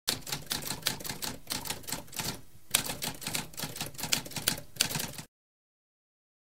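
Typewriter keys clacking in a rapid run of strikes, with a short pause about two and a half seconds in, then more typing that cuts off about five seconds in.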